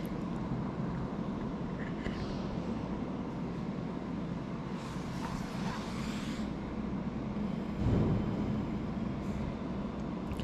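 Steady low background rumble of the gallery's room noise, with a short hiss about five seconds in and a dull low thump near the eighth second.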